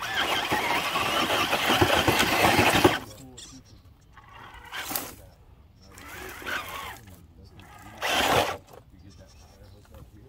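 Radio-controlled rock crawler's electric motor and drivetrain straining as its tires scrabble and grind on rock, loud for about three seconds, then quieter, with another short loud burst a little after eight seconds.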